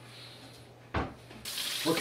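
Kitchen tap turned on about one and a half seconds in, water running steadily into a stainless steel sink. A single knock comes shortly before the water starts.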